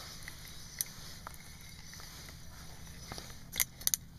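Handling noise while a hooked crappie is brought up through the ice hole: a few sharp clicks and knocks, with a quick cluster of louder ones near the end, over a low steady hum.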